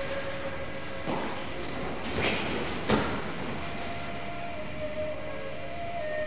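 Steady hiss and hum of old videotape audio, with a few short swishing noises and a brief thud just before three seconds in, as the two practitioners move and grapple on the mat.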